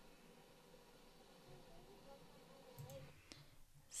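Near silence: a video clip's own soundtrack played back faintly in an editor's preview with its volume turned down to −14 dB, with two mouse clicks near the end.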